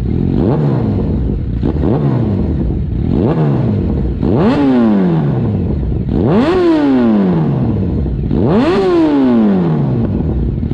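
Yamaha FZ1 inline-four motorcycle engine being blipped and revved: three short blips, then three bigger revs, each rising quickly and falling back more slowly to idle.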